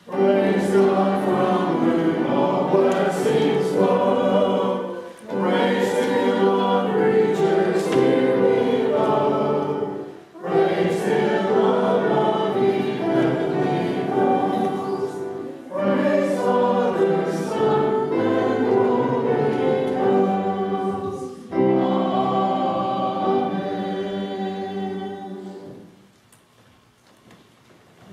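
Church choir singing in mixed voices, in five phrases with short breaths between them; the last phrase fades out near the end.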